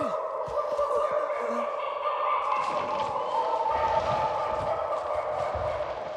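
A sustained chorus of many overlapping wailing cries holding steady pitches, with no break for the whole stretch.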